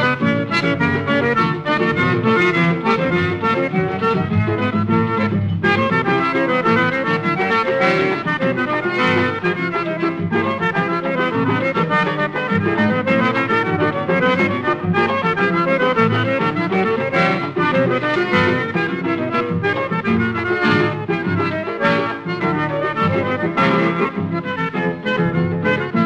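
Accordion-led choro baião with a regional backing group, played from a 1953 shellac 78 rpm record; the accordion carries a lively, continuous melody.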